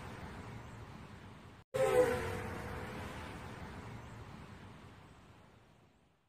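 End-card sound effect: the fading tail of one hit, then about two seconds in the same sudden hit again, with falling tones and a long tail that dies away by the end.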